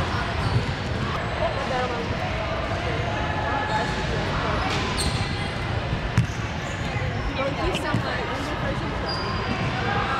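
Gym ambience: many voices chattering at once with basketballs bouncing on a hardwood court, a few sharp knocks standing out.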